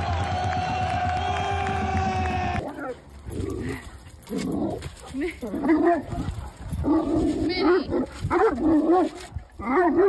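Music with crowd noise for the first two and a half seconds. It cuts off suddenly, and a dog then whines and yelps in short, wavering cries repeated every second or so.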